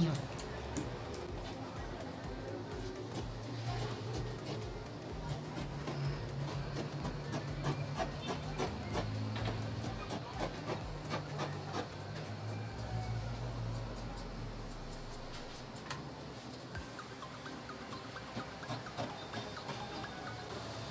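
Scissors cutting through quilted fabric and its lining, a long run of quick snips as the blades close again and again along the edge.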